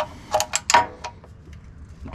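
Hand ratchet with a 14 mm socket clicking in four short bursts within the first second as it runs an engine oil sump plug back in, then quieter.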